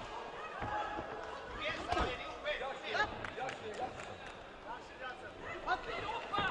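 Voices shouting in a boxing arena, from the crowd and the corners, during an amateur bout. A few sharp thuds from the ring cut through the shouting, the loudest about two seconds in.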